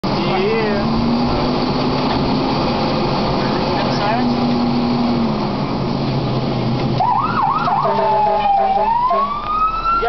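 Heavy rescue fire truck's cab noise with the engine running, then about seven seconds in its siren starts: a few fast yelps followed by a long wail rising in pitch.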